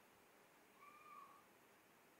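Near silence: room tone during a pause, broken about a second in by one faint, brief steady call lasting under a second.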